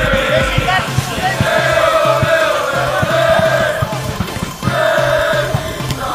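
Football supporters chanting in unison, long sung lines from many voices with a short break about two-thirds of the way through, over a steady beat of about two a second.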